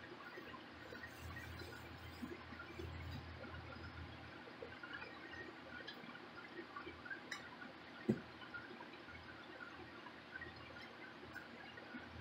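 Faint sounds of a metal paint can being worked with a wooden stir stick, the stick stirring liquid paint, with small clicks and one sharp knock about eight seconds in.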